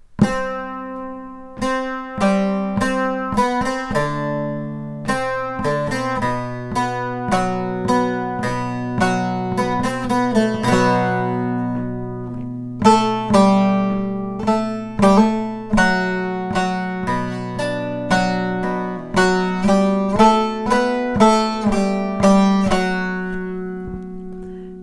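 Solo bağlama playing a plucked melody, several notes a second, over steadily ringing low strings. It is the instrumental passage played straight through, with no note names sung.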